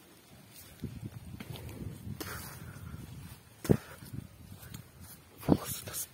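Rustling and footsteps through grass, with two sharp thumps about two seconds apart, the second near the end.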